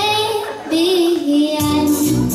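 A ten-year-old girl singing a melody into a microphone while accompanying herself on a Yamaha electronic keyboard; her voice breaks off briefly about half a second in before the next phrase.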